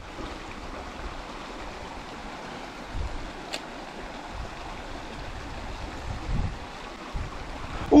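Creek water running steadily over rocks, with a few low thumps and a single brief click about three and a half seconds in.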